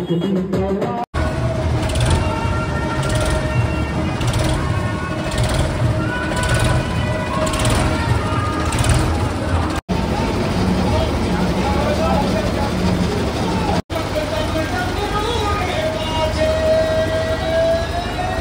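Loud amplified devotional singing and music through horn loudspeakers, with long held notes over a low rumble and a beat about once a second for the first several seconds. The sound drops out abruptly three times.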